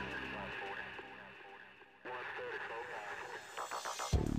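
Background music fades down over the first two seconds; about halfway through, a thin, radio-like voice sound comes in and runs until the music returns at the end.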